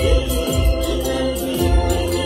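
A large church congregation singing a hymn together in many-voiced harmony, with a steady low beat pulsing under the singing.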